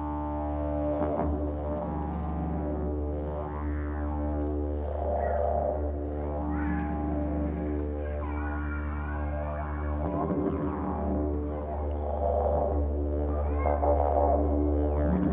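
Didgeridoo playing one unbroken low drone, its upper overtones shifting and sweeping as the player shapes the sound.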